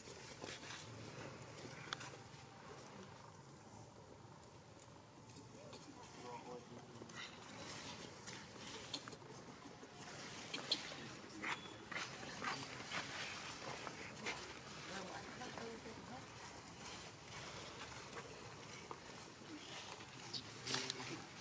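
Faint outdoor ambience with indistinct voices in the background and scattered light crackles and clicks that become more frequent partway through.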